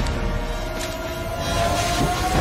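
Film sound effects of a damaged, sparking flying suit: a slowly rising whine over a dense rumbling, crackling noise.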